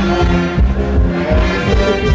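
Live carnival band playing loudly through a stage PA: saxophone and brass melody over a steady bass beat.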